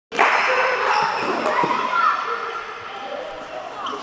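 Many boys shouting and calling out in a large echoing indoor court, with a few sharp thuds of a ball about a second in. The voices are loudest at first and ease off after about two seconds.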